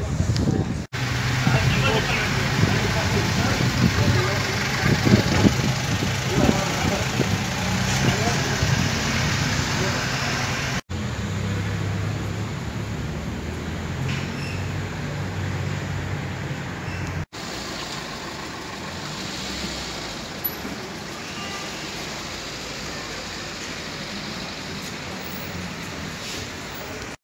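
Town street ambience: a steady hum of car traffic with indistinct voices of people around, loudest in the first ten seconds. The sound breaks off and changes abruptly three times where clips are cut together.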